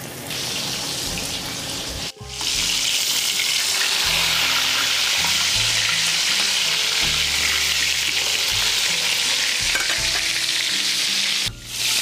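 Breaded veal cutlets sizzling steadily in hot, shimmering peanut oil in a stainless steel skillet. The sizzle breaks off for a moment about two seconds in, returns louder, and dips briefly again near the end.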